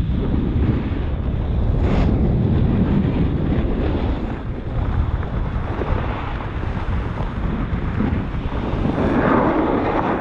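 Wind buffeting the microphone of a camera moving at speed down a snow slope, a steady low rumble mixed with the hiss of snowboards sliding over snow. It swells louder about two seconds in and again near the end.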